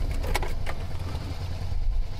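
A car's engine and road rumble heard from inside the cabin as a steady low drone while it is driven, with a few light clicks about half a second in.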